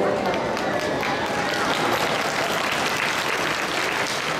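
Audience applauding, the clapping filling in about a second in, with voices over it.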